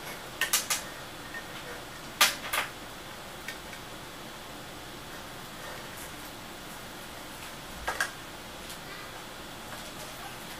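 Hands handling a plastic AC adapter and its cable on a tabletop, giving a handful of light clicks and knocks over a faint steady hiss. The sharpest click comes about two seconds in, with another pair near the end.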